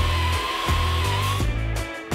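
Background music with a steady beat, with a power drill whining at a steady pitch over the first second and a half.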